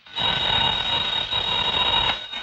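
Desk telephone bell ringing with an incoming call: one long, steady ring of nearly two seconds that begins just after the start.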